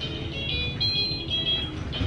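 Music: a simple, tinkly melody of high held notes, with no voice.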